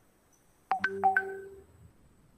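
Electronic message-notification chime: a quick run of about four short ringing tones in half a second, the last one dying away.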